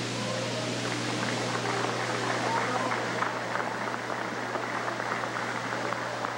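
Crowd applauding: many hand claps over a murmur of voices, with a steady low hum underneath.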